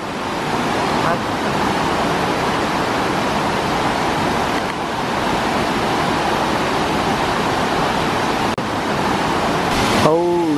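Rushing water of a rocky forest creek, white water running over boulders in a steady, even rush.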